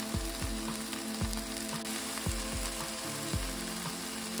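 Onions and canned diced tomatoes sizzling steadily in a skillet.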